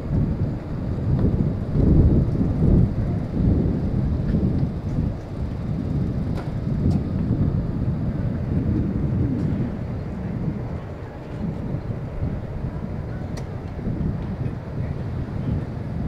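Wind buffeting the camera's microphone: a loud, uneven low rumble that swells and fades in gusts, with a few faint clicks.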